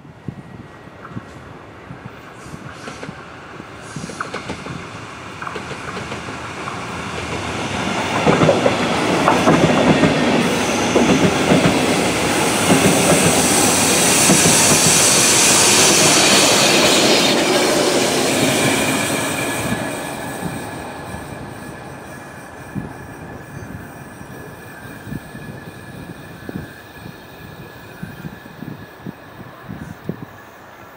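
A DB class 112 electric locomotive hauling a regional train approaches and passes close by. The rumble and wheel noise build to a peak about halfway through, then die away into a trail of wheel clicks and a faint high ringing as the train runs on.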